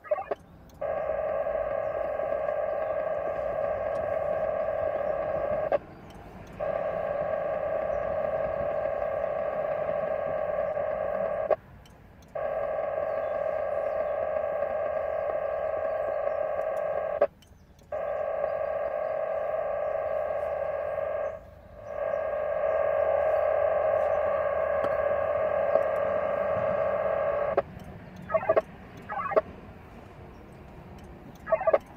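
VARA FM digital modem signal heard over a Yaesu FT-8900 mobile radio's speaker: a dense band of many steady tones, sounding like a buzzing warble. It comes in five long frames of about five seconds each, separated by brief pauses, then a few short chirps near the end. These are Winlink messages being downloaded from a gateway station, mid-session.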